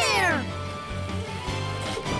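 An animated Ornithomimus gives a high cry that falls in pitch and fades within the first half second, over steady background music.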